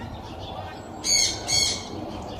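Two short, loud bird calls about half a second apart, a little past a second in, over faint background birdsong.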